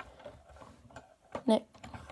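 Small plastic toy parts handled on a wooden tabletop: a Transformers Jazz figure's gun accessory gives a few faint clicks and taps. A short spoken syllable comes about one and a half seconds in.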